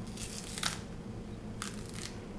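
Tough green plantain skin being pried and torn away from the flesh with a kitchen knife: a rasping tear in the first half and a shorter one near the end.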